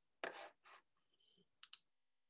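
Faint clicking from a computer mouse and keyboard, with two quick clicks close together near the end.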